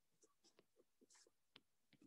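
Near silence, with a few faint ticks of a stylus tapping and sliding on a tablet screen as a line is drawn.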